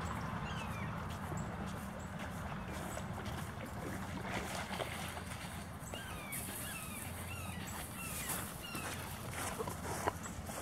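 A series of short, high-pitched, falling animal cries, repeating about every half second and more frequent in the second half, over steady outdoor background noise.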